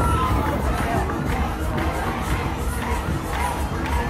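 A large crowd shouting and cheering, many voices at once in a steady, dense din.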